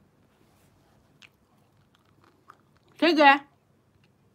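Faint wet mouth clicks from eating a treat on a stick close to the microphone, then a short, loud vocal sound from a woman about three seconds in.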